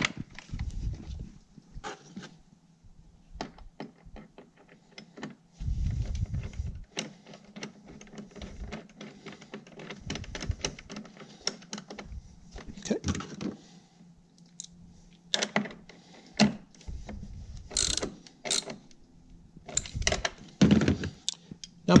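Socket wrench on a long extension clicking and clinking as the 13 mm battery hold-down bracket bolt is put back in, with irregular sharp clicks and a few dull thumps of parts being handled.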